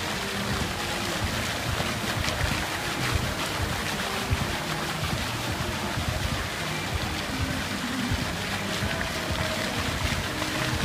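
Musical fountain's water jets spraying and splashing back into the pool, a steady rushing hiss, with the show's music playing faintly underneath.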